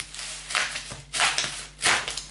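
Stiff manila postal envelope being torn open by hand: three short paper rips about two-thirds of a second apart, the last the loudest.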